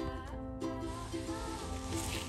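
Background music: a light tune of short, evenly repeated notes over held tones.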